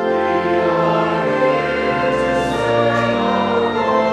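Choir singing with organ accompaniment, sustained chords that start together right after a brief pause.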